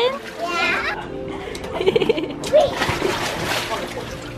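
Water splashing in a shallow inflatable pool as children move and play in it, with a child's voice and background music.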